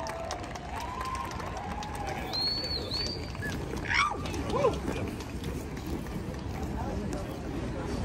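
Outdoor crowd and city noise with scattered voices, over a steady low rumble. A brief high-pitched glide comes about two and a half seconds in, and a sharper wavering squeal about four seconds in.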